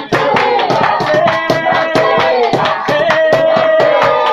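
A church praise group singing a worship chorus together over a steady beat of hand clapping.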